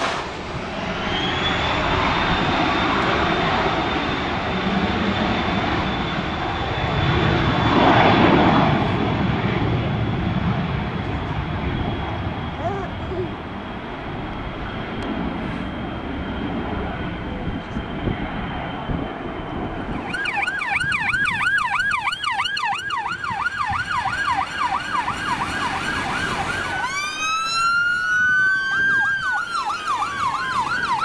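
A Cessna Citation business jet's turbofan engines run with a steady high whine and a rush of jet noise that swells loudest about a quarter of the way in. About two-thirds of the way through, this gives way abruptly to emergency-vehicle sirens: a fast yelp, joined near the end by rising and falling wails.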